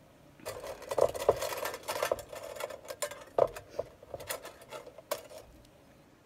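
Hands working in hair: irregular rustling and crackling with scattered sharp clicks, starting about half a second in and dying away near the end.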